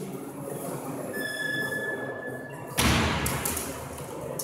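A sudden sharp knock from the sword bout, a blade contact or a stamped step on the wooden floor, about three quarters of the way through. It echoes on in the hall for about a second. Before it, a faint steady high ringing tone sounds for about a second and a half.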